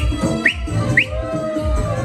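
Loud dance music whose beat thins out for a moment, with two short, sharp rising whistles about half a second apart, a person whistling over it.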